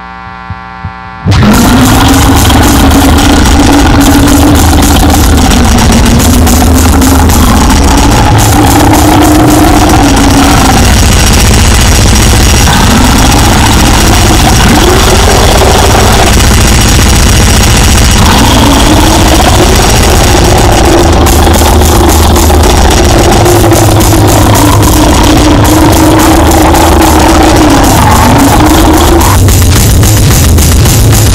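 Harsh, lo-fi goregrind noise music: a brief quieter lull, then a little over a second in a new track bursts in at full volume as a dense wall of distorted sound with rapid drum hits and a low tone that wavers up and down in pitch.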